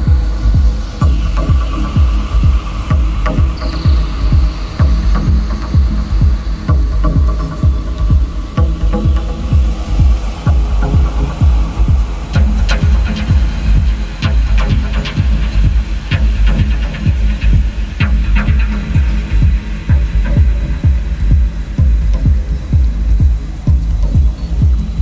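Deep, hypnotic techno track: a steady kick-drum and bass pulse repeating evenly throughout, with faint sustained synth tones and small clicks above it.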